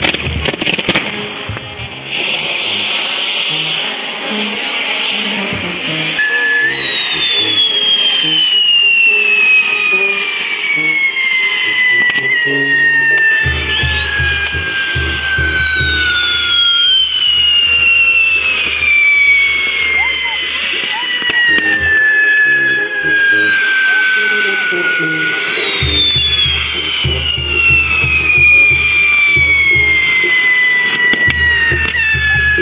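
Fireworks castillo burning: a rush of hissing, then whistles that start high and fall slowly in pitch, each for about eight seconds, one after another three times. Crackle and a low throb run underneath.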